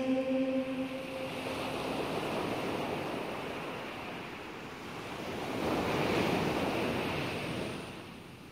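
Sea surf washing in under wind, a steady rush that swells once about six seconds in and then ebbs. The last held notes of the song fade out during the first two seconds.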